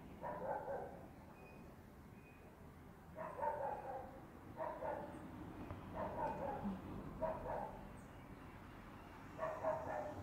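A dog barking repeatedly, about six barks of roughly half a second each with pauses between them.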